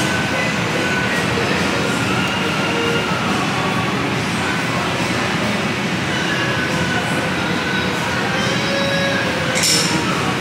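Heavy tropical rain falling steadily on the restaurant's roof and surroundings during a thunderstorm, an even, loud rush with a few faint clinks of cutlery.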